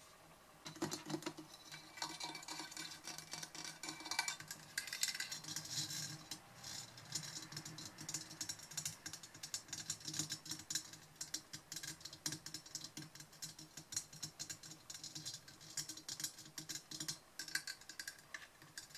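Long fingernails tapping and scratching quickly over a Blue Yeti microphone's metal mesh grille and metal body: a dense run of light clicks.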